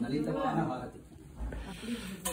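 Soft, indistinct speech with some hiss, dropping to a brief lull about a second in before the voice resumes.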